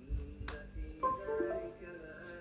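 A single sharp click about half a second in, followed by background music with a melody starting about a second in.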